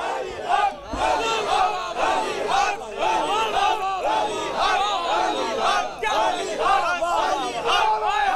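A gathering of men shouting loud acclamations together in repeated waves, one voice calling out over the rest, in answer to a line of the sermon.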